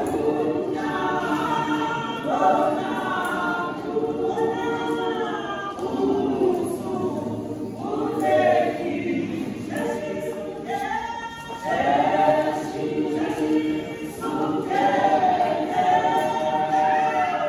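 A women's gospel choir singing together in several voices, phrase after phrase, with short breaths between the lines.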